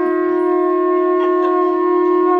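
Two conch shells (shankha) blown together in one long, unbroken held note, steady in pitch and loud.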